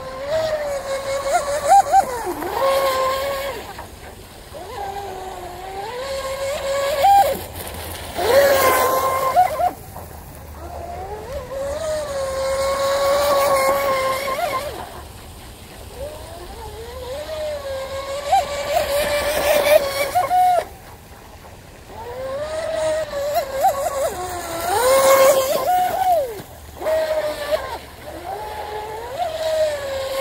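Brushless electric motor of a 19-inch RC water bobber speedboat with a 4,000 kV motor, whining as it runs on the water, its pitch and loudness rising and falling again and again as the throttle and distance change over several passes.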